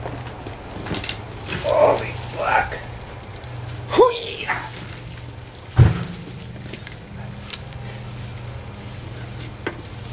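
A heavy old refrigerator is heaved upright off the ground and lands with one loud thump about six seconds in, after a few short strained vocal sounds. A steady low hum runs underneath throughout.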